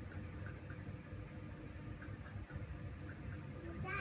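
Faint handling noise over a low room hum, with a few faint light ticks, as the small carved ivory figure is turned in the fingers. A short voice sound comes just at the end.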